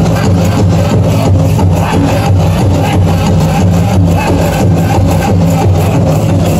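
Powwow drum music for a dance competition: a steady drumbeat of about four strokes a second that runs on without a break.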